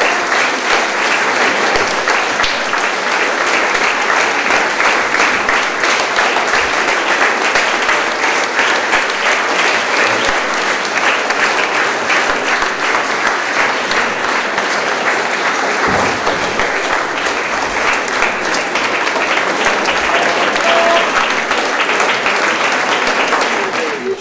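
Audience applauding: long, dense, steady clapping from a room full of people.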